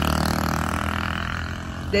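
A motor vehicle's engine hum with a haze of road noise, steady and fading slowly.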